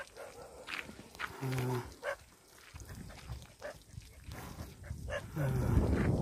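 Yoked Ongole bulls hauling a weighted tyre sled on a dirt track: scattered sharp clicks and clops from hooves and gear, with one short, low, steady-pitched call about a second and a half in. Near the end a rough, louder dragging noise sets in.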